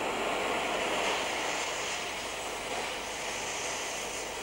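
Gas torch flame hissing steadily as it heats an iron bar from orange to yellow heat.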